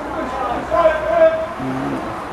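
People's voices calling out, with one long held shout a little before the middle and a lower voice near the end.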